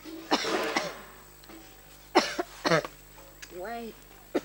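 A person coughing in two bouts of rough coughs, the first about a third of a second in and the second about two seconds in, followed by a short spoken word near the end.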